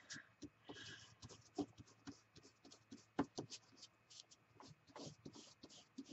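Faint, irregular scratchy dabs and rubs of a small foam-tipped blending tool working opal polish heavily onto embossed cardstock.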